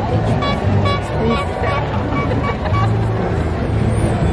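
A horn tooting in a quick run of about nine short, high, same-pitched toots, roughly four a second, over a low engine rumble and crowd chatter as antique cars pass.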